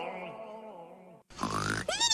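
A drawn-out grunting voice with falling pitch fades away over about a second. After a brief silence comes a rough, snort-like noise, with a rising vocal glide near the end.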